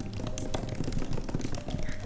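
Rapid typing on a computer keyboard, a fast run of keystroke clicks, with faint background music under it.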